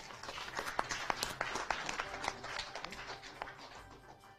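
Audience applauding, a dense patter of claps that swells in the first second and fades toward the end, over quiet background music.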